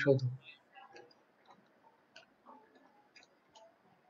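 A few faint, scattered clicks of a stylus tapping a tablet screen during handwriting.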